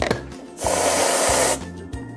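Aerosol can of whipped cream spraying into a plastic cup: one hiss about a second long, starting about half a second in, over background music with a steady beat.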